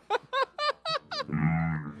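Men laughing in a run of about five quick, high, squeaky bursts that slide up and down in pitch, then a short steady low hum before the laughter picks up again.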